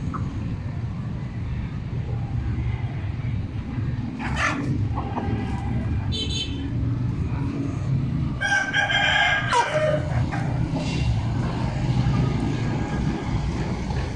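Domestic chickens feeding, with short calls about four and six seconds in, then a rooster crowing once, a call of about a second and a half, about eight seconds in. A steady low rumble runs underneath.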